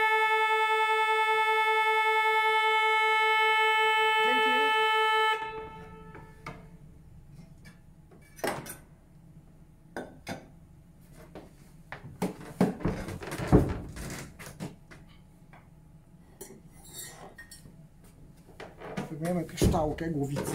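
Pipe organ sounding a held A, rich in overtones and with a quick pulsing beat, for about five seconds before it stops. This beating is the wavering of an out-of-tune reed pipe that has to be tuned out. Then come scattered sharp metallic clinks and knocks as the metal reed pipes are handled and adjusted.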